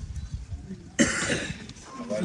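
A person coughing once about a second in: a sudden rough burst that fades within about half a second, over a low rumble.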